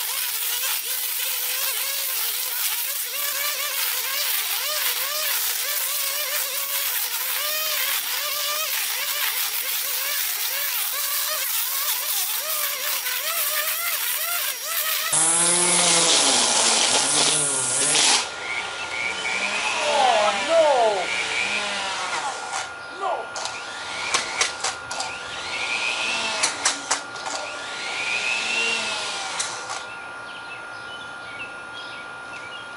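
Corded electric string trimmer running while it cuts tall, thick weeds, its motor whine dipping and rising over and over as the line bogs in the growth and recovers. About halfway through the sound changes abruptly, and the trimmer goes on with sharp ticks from the line striking stalks.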